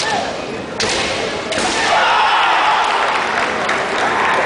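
Kendo exchange on a wooden gym floor: two sharp impacts of shinai strikes and a stamping foot about a second in, the second half a second after the first. Long, drawn-out kiai shouts from the fencers follow.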